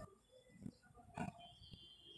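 Faint squeaks and strokes of a marker pen writing on a whiteboard.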